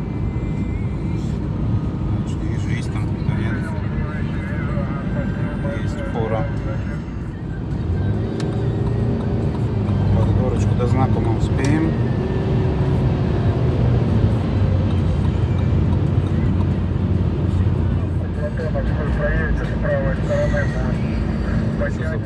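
Car interior noise at highway speed: steady tyre and engine rumble that grows louder from about eight seconds in, while the car passes a semi-trailer truck. Indistinct voices are heard over it.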